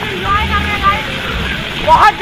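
A man's voice calling out in drawn-out, sing-song tones for about the first second, then again right at the end, over the steady rushing spray of splash-pad fountain jets.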